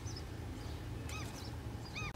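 Faint outdoor bird calls: three short arched chirps spread over two seconds, over a steady low background rumble.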